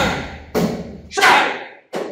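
Wooden shovel handles striking a man's back and snapping: a run of sharp cracks with short decaying tails, loudest at the start and again a little over a second in.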